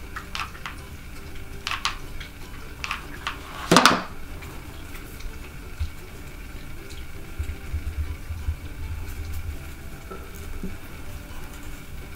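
Small clicks and taps of hands working a hot glue gun and lace onto a cardboard tube, with a louder clack about four seconds in, then only faint handling ticks.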